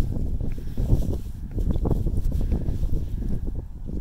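Footsteps and phone handling while climbing concrete outdoor stairs, under an uneven low rumble of wind on the microphone.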